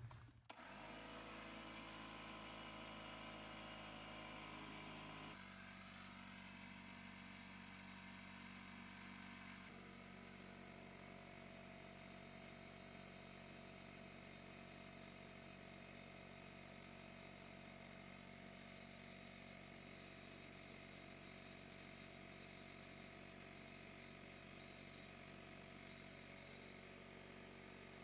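Porter-Cable pancake air compressor running, heard only faintly as a steady hum that drops a little in level twice.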